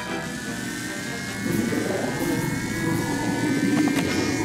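Cartoon machine sound effect: a whirring whine slowly rising in pitch, joined about a second and a half in by a louder buzzing rumble, with background music.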